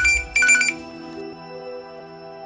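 Mobile phone ringing: two short electronic trills in the first second, the second about half a second after the first, over a soft sustained music bed.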